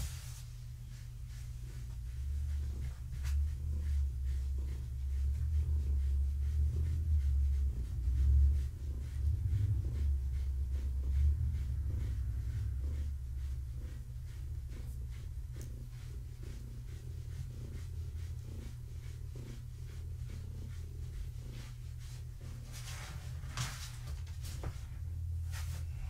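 A long-haired tabby cat purring in a low, steady rumble while being brushed, loudest in the first half. There are a couple of brief rustles near the end.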